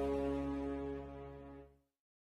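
The closing chord of a karaoke backing track for a pop ballad, held over a deep bass note and slowly fading, then cutting off shortly before the end.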